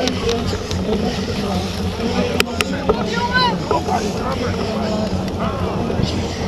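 Wind rumbling steadily on an action camera's microphone as it rides along on a mountain bike, with voices calling out around the middle and two sharp clicks about two and a half seconds in.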